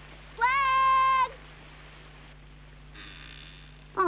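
A young deer's bleat, as a cartoon sound effect: one long, level, high call, starting about half a second in and lasting nearly a second.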